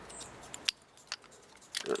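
A few sharp clicks of hard plastic toy parts being handled: the pieces of a Bandai MagiKing combiner figure knocking together in the hands. The loudest click comes about two-thirds of a second in.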